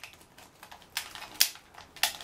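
A few sharp plastic clicks from a hand-held hairdryer's switch being worked, with no motor or blowing following them: the hairdryer has broken and will not start.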